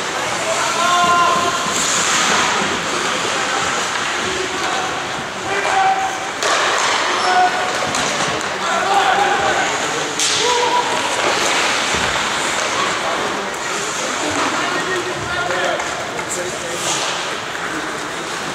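Ice hockey game sound in an indoor rink: spectators' voices and shouts over skate scrapes, with a few sharp knocks of sticks, puck and boards.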